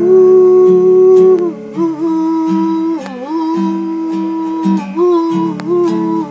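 A woman humming a slow wordless melody in long held notes, with guitar accompaniment underneath.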